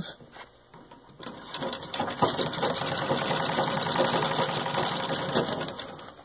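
1922 Singer 66-1 treadle sewing machine stitching through six layers of denim: it starts about a second in, quickly picks up to a steady rapid rhythm of needle strokes, and slows to a stop near the end.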